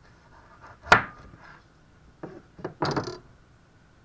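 Chef's knife slicing lengthwise through a raw carrot on a plastic cutting board. There is a sharp knock about a second in as the blade comes down onto the board, then a few softer crunching and scraping sounds of the knife working through the carrot.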